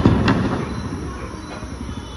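A loud bang, followed by a second sharp crack about a third of a second later, both dying away over steady background noise.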